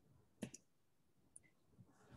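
Near silence with a single short click about half a second in, followed by a couple of very faint ticks.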